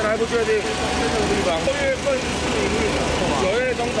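Raised human voices over a steady low rumble of a running vehicle engine, in noisy on-location audio.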